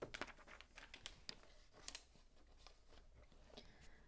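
Faint, scattered clicks and rustles of plastic Lego pieces being handled. The clearest come right at the start and again about one and two seconds in.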